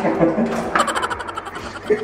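A man laughing under his breath in quick, breathy pulses.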